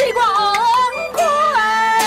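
Taiwanese opera (gezaixi) singing: a solo voice sings a lyric line in sliding, ornamented pitch and settles on a held note near the end, over traditional instrumental accompaniment.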